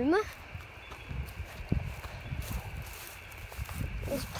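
Footsteps on dry grass and ground, soft irregular thuds, under low rumbling noise on the microphone.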